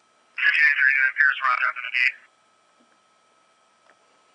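Police radio dispatch voice streamed from a scanner feed and played through an iPod touch's small speaker: about two seconds of fast, thin, radio-like speech, then a faint steady high tone over near silence.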